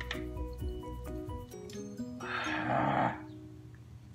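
Background music of repeating plucked notes; a little past two seconds in, a man's harsh, raspy gasp lasting about a second, his reaction to the burn of a shot of liquor.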